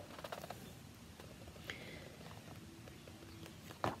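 Faint handling sounds of a colouring book held in the hands: small scattered ticks and rustles, with a page of the book turning just before the end.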